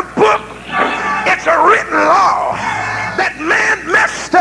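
A preacher's voice in a sung, chanting delivery, with music behind it, from an old tape recording of a sermon.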